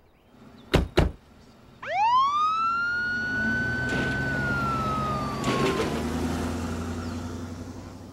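Two sharp thumps, then a fire department van's siren winding up from low to high, holding, and slowly falling in pitch, fading as the van drives away.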